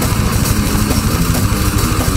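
Death metal band playing live: heavily distorted low guitars and bass over fast, even drumming, an instrumental passage with no vocals.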